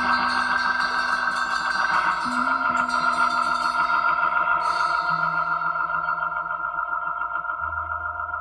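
Early-1970s progressive rock instrumental passage: a sustained, wavering chord played through effects over a few changing bass notes. A bright high layer cuts off suddenly a little past halfway, and the music grows slightly softer towards the end.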